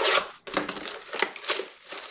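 Plastic wrapping crinkling and tearing on a sealed Panini Prizm basketball card box as it is opened, a run of crackly rustles that is loudest at the start.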